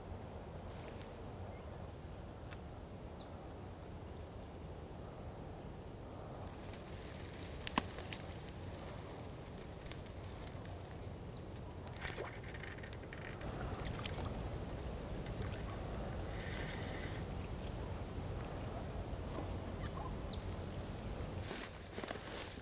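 Faint riverside ambience: a steady low rumble with occasional faint bird calls and a few light clicks.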